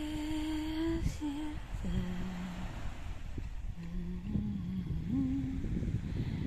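A woman humming a slow tune without words, in long held notes that step between pitches, with a low wind rumble on the microphone underneath.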